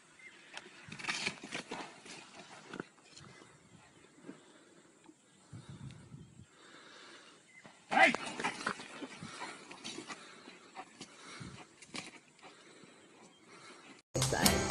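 Low voices and rustling in dry bush. About eight seconds in, a sudden loud cry as an African elephant charges, then quieter noise.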